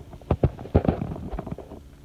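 Phone handling noise: irregular clicks and knocks with light rubbing as the phone is moved across pillows and bedding, loudest in the first second.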